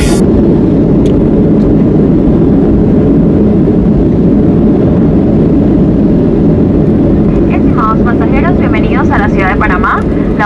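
Loud, steady roar of an airliner's jet engines and rolling noise, heard from inside the cabin as the plane moves along the runway just after landing. Voices come in near the end.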